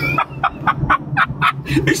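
A man laughing hard in quick, breathy bursts, about five a second.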